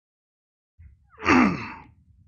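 A man sighs into a clip-on microphone about a second in: a loud breathy exhale with a falling voice, lasting under a second.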